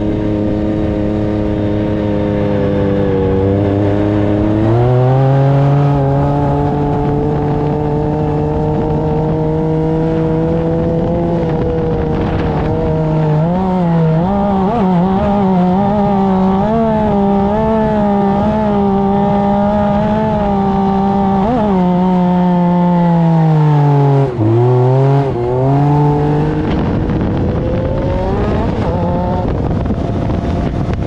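Off-road buggy engine heard from on board while driving through sand dunes, its pitch rising about five seconds in, wavering up and down with the throttle through the middle, dropping sharply and picking back up about three-quarters of the way through, then climbing again near the end. Wind noise and rumble run underneath.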